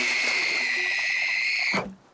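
A long, high-pitched held tone from a cartoon soundtrack. It swoops up at the start, holds steady, then drops sharply in pitch and cuts off near the end.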